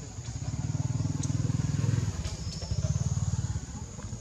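A low engine rumble with a rapid pulse, building for about two seconds, dipping briefly, then coming back and fading shortly before the end.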